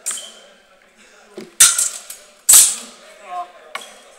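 Steel sword blades striking during fencing sparring: four sharp metallic clashes, each with a brief ringing tail. A lighter clash comes at the start, two loud ones come a little under a second apart in the middle, and a light one comes near the end.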